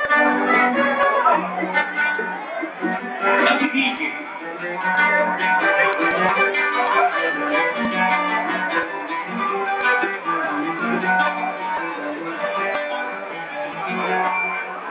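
Live samba played by a small group, led by a plucked acoustic guitar, running steadily.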